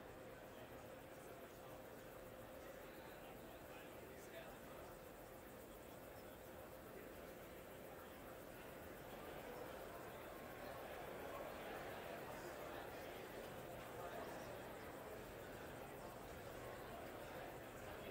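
Near silence: a faint steady hiss with a thin constant hum, rising slightly in level about halfway through.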